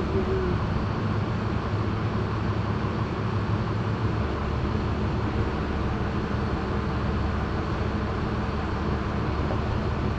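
Electric overhead hoist running steadily as it lowers a heavy truck transmission, a constant mechanical hum with no breaks.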